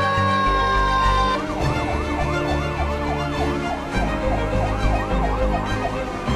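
A fire engine siren: a steady high wail that switches about a second in to a fast up-and-down yelp, about three sweeps a second, and eases off near the end. Music plays underneath.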